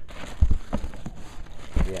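Plastic bag crinkling as hands grip a boxed subwoofer, with two dull thumps, one about half a second in and one near the end.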